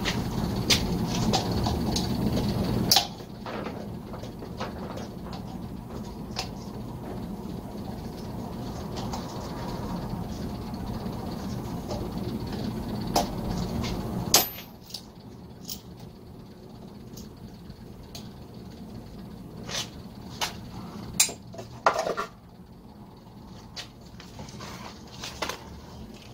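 Scattered clicks and light knocks of a screwdriver and plastic parts as wires are disconnected from an air compressor's pressure-switch box. A low steady hum sits under the first half and stops abruptly about fourteen seconds in.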